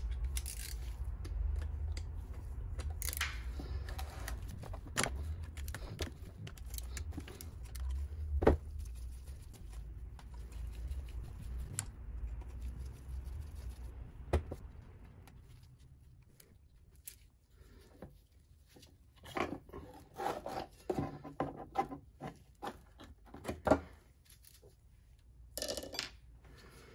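Small metal clicks and clinks of hand tools and screws as the ignition stator plate is unbolted and taken off a KTM SX 85 two-stroke engine's crankcase. Single sharp clicks come every few seconds, with a cluster of them near the end, and a low rumble sits under the first half.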